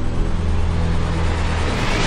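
A deep, dark drone of ominous soundtrack music, a sustained low hum with a rumbling wash above it.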